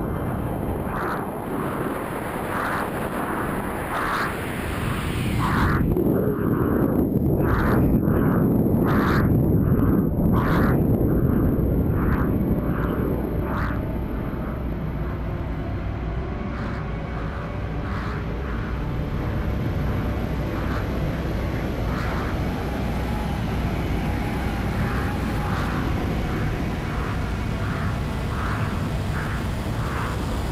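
Onboard audio from a pressure-suited skydiver in supersonic freefall: a steady rushing rumble, louder for several seconds early on. Over it come short, quick, regular hisses less than a second apart, like fast breathing inside the helmet.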